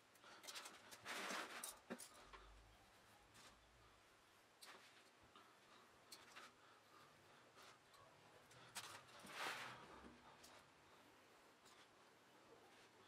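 Faint rustling and scratching of tissue paper being cut with a craft knife and shifted on a cutting mat. There are two brief louder rustles, about a second in and again about nine seconds in, with a few small ticks between.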